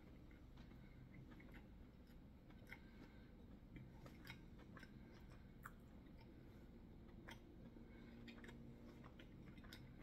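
Near silence, with faint scattered mouth clicks and smacks from someone tasting in his mouth.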